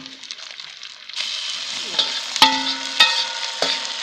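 Porcini mushrooms tipped into a hot kazan of frying meat start to sizzle about a second in, a steady hiss. A metal slotted spoon clinks sharply three times with a short ring as it scrapes them out of the enamel bowl.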